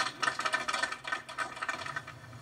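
Small crowd applauding, made of many separate irregular claps, heard through a television's speaker.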